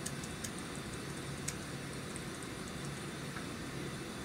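Steady room hum of a classroom's ventilation, with a few faint clicks of laptop keys as a chat message is typed.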